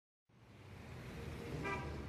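Low outdoor background rumble fading in, with one short pitched toot about one and a half seconds in.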